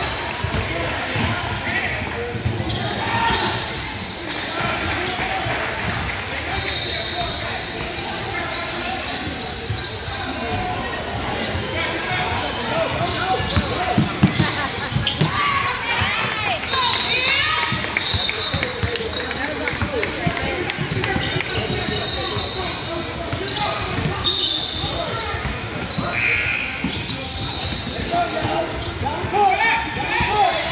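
Basketball bouncing on a hardwood gym floor with scattered knocks of play, brief high sneaker squeaks a few times, and voices chattering, all echoing in a large gym hall.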